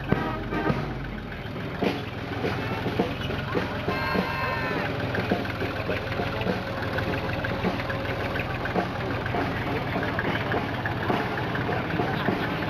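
Fendt Farmer tractor's diesel engine running as it drives slowly past pulling a loaded wagon, a steady low hum with quick knocks, over music and voices.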